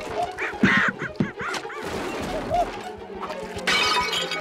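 Cartoon soundtrack of short, high, rising-and-falling shrieks and chattering cries, with a few sharp knocks and music underneath.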